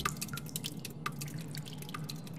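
Water dripping from a melting ice sculpture: soft, irregular drips, some with a small plink.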